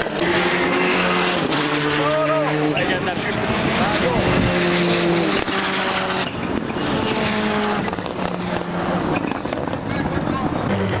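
Rallycross cars racing on the circuit, their engines revving hard with the pitch stepping up and down through gear changes.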